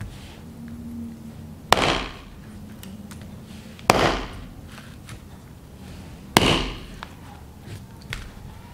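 Three hard knife whacks into the woody rind of a mocambo (Theobroma bicolor) fruit on a plastic cutting board, about two seconds apart. Each is a sharp impact that dies away quickly. The rind is very hard and barely gives.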